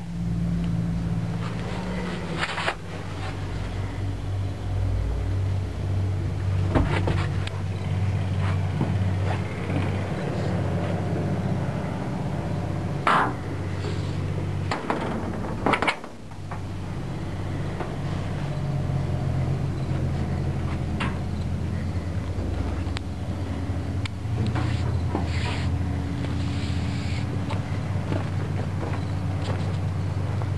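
A steady low rumble with a few sharp knocks and clanks, typical of handling and footsteps while moving about on a steel machine.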